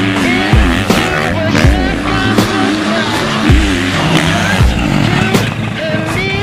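Motocross dirt bike engine revving up and falling back again and again as the bike is ridden hard around the track, mixed with background music that has a regular bass beat.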